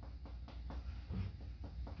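Faint chest percussion on the upper back: a finger striking the middle finger laid flat over the lung field, several light, irregularly spaced taps over a steady low hum.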